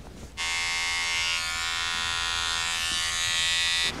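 Electric razor buzzing steadily as it cuts through a full beard. It switches on sharply about half a second in and cuts off just before the end.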